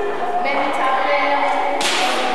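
A woman's voice speaking through a microphone and hall sound system, with one sharp crack near the end.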